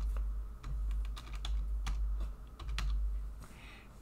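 Typing on a computer keyboard: irregular keystroke clicks, a few at a time with short pauses, over a steady low hum.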